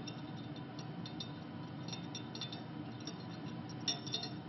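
Light, faint clinks of glassware, a few scattered taps over steady room noise.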